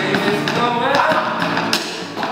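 Acoustic jam: drumsticks tapping out a beat on a hard flight case, with acoustic guitar and voices singing along. The level dips briefly at the very end.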